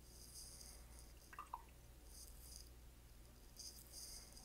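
Near silence, with a few faint soft swishes of a watercolor brush stroking textured paper as a small bud is painted.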